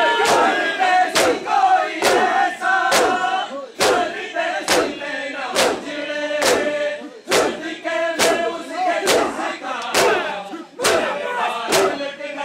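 A crowd of men chanting a noha lament in unison while striking their bare chests in matam. The sharp chest slaps land together in a steady beat, a little faster than one a second, under the sung chant.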